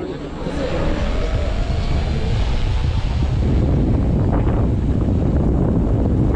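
Wind buffeting the microphone: a loud low rumble that builds about half a second in and holds, with a faint rising tone over the first two seconds and faint onlookers' voices beneath.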